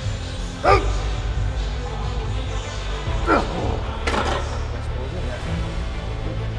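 Background music with a steady bass line. Over it a man gives three short, strained cries that fall in pitch: one about a second in and two more past the three- and four-second marks. They are effort grunts from pushing through the last reps of a heavy machine set.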